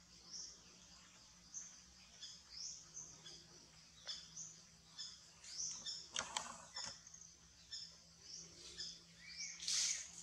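Small birds chirping in short high calls again and again, with a brief rustle about six seconds in and a louder call near the end.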